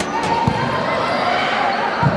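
Live sound of a futsal game in a sports hall: the ball thuds once about half a second in, over a background of players' and spectators' voices.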